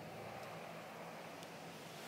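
Faint steady room tone: a low hum under a soft hiss, with no distinct event.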